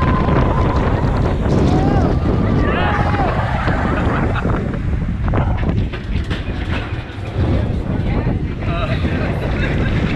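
Roller coaster ride heard from a camera on board the Seven Dwarfs Mine Train: wind rushing over the microphone and the mine cars rumbling along the track, with riders whooping and shouting now and then.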